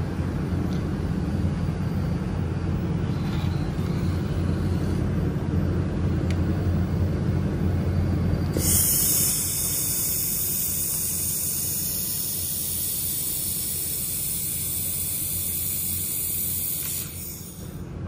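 A steady low machine hum, then about eight and a half seconds in a loud, steady high hiss starts abruptly as the 1000 W handheld fiber laser welder runs along the seam of 2 mm aluminum, throwing sparks. The hiss cuts off sharply about a second before the end.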